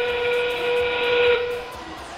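FRC field's end-game warning sound, a steam-train whistle played over the arena speakers as the match clock runs down to 20 seconds. It is one steady, held whistle tone with a hiss, stopping shortly before two seconds in.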